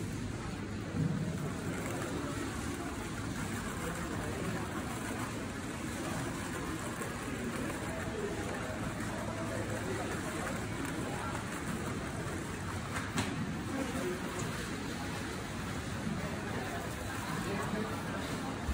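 Supermarket background noise: a steady hubbub with indistinct shoppers' voices, and a single sharp click about two thirds of the way through.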